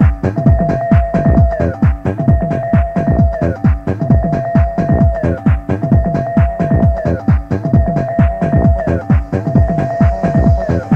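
Electronic dance music from a club DJ set: a steady kick drum about twice a second under a held synth note that slides down in pitch roughly every two seconds.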